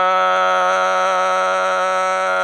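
A man's voice holding one long, steady note, a drawn-out vowel in the manner of chanted Quran recitation.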